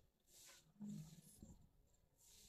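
Near silence, with faint strokes of a marker on a whiteboard as a numeral and a line are written, and a faint low sound about a second in.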